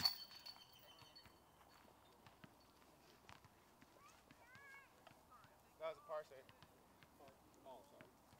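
Faint, quiet outdoor ambience with scattered light ticks. Short distant voices come in about six seconds in.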